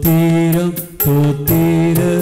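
A man singing a slow hymn in long held notes, with a sharp percussion strike about once a second.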